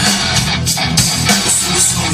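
Guitar-led music playing loudly from the Volkswagen Golf 7's standard factory car stereo.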